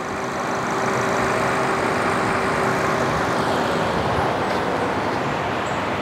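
2008 Chevy Cobalt's engine running, heard up close in the engine bay as a steady rushing noise with a faint hum, swelling over the first second and then holding level.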